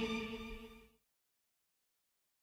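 The final held chord of a Mizrahi pop song rings out and dies away, falling to silence about a second in.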